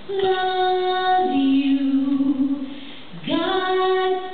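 A woman singing a slow country lullaby unaccompanied into a microphone, her voice not warmed up. She holds a note, steps down to a lower held note, then after a short breath slides up into a long high note.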